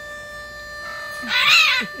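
A harmonica holds one steady note throughout. About a second in, a hyacinth macaw gives a loud, wavering call lasting about a second. Laughter starts near the end.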